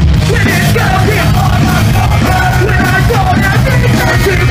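Live punk rock band playing loud, with drums, bass and electric guitars and shouted vocals over them.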